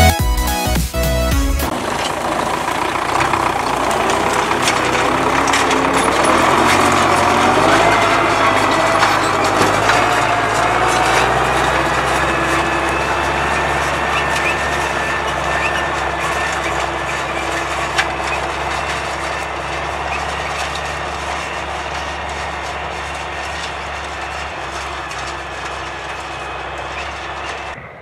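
MTZ-82 tractor's four-cylinder diesel engine running steadily while towing a cultivator, its drone slowly fading toward the end. Music plays for the first second or two and then stops.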